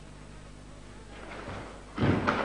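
Steady low hum. In the last second a whoosh swells as the karateka leaps into a technique, building toward a landing thud.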